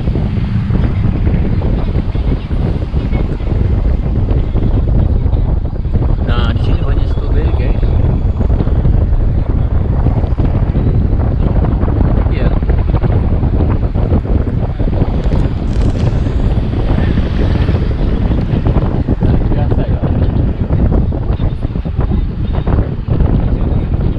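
Car driving on a road with a steady, loud low rumble of road noise and wind buffeting the microphone.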